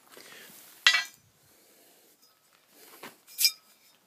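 Two sharp metallic clinks with a short ring, about a second in and again near the end: a length of metal pipe knocking against an axle shaft and bearing as it is slid down over them.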